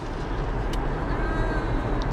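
Steady low rumble of a moving car's road and engine noise heard from inside the cabin, with one light click partway through.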